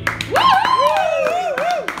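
Audience clapping as a song ends, with a voice calling out in long rising and falling whoops over the claps.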